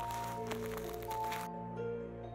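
Background music of slow, sustained notes, over the crackling of bubble wrap and packing tape being picked at by hand. The crackling stops abruptly about one and a half seconds in, leaving only the music.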